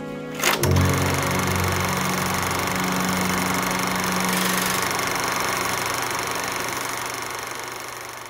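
A soft background tune stops with a sharp click about half a second in, and a film projector starts running: a steady mechanical whir and rattle with a low hum. It fades out near the end.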